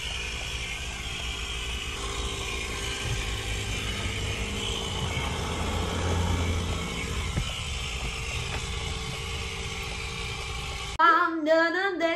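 Steady road and engine noise inside a car's cabin: a low rumble with a constant hiss over it, swelling slightly about halfway through and cutting off suddenly near the end.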